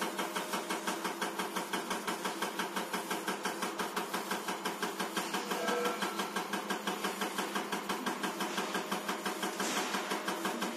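Diesel injector test bench running an electronic unit injector at 350 rpm: a steady machine hum with the cam-driven injector pulsing in an even, rapid rhythm.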